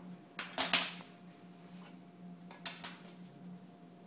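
Drawing tools clattering on a desk as they are handled and set down: a loud rattle of clicks about half a second in, and a lighter clatter near three seconds as a plastic ruler is brought onto the paper.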